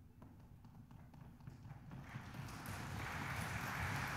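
Audience applause: a few scattered claps at first, swelling into full, steady clapping from about two seconds in.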